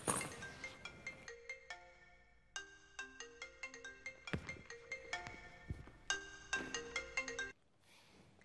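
Mobile phone ringtone playing a short melody over and over, cut off suddenly near the end when the call is answered.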